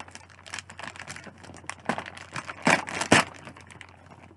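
Clear plastic packaging bag crinkling and crackling as it is handled and pulled open by hand, with a few louder crackles about two and three seconds in.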